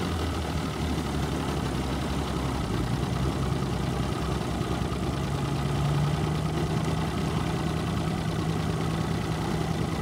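Mercury 225 outboard motor idling steadily, its note rising a little about halfway through.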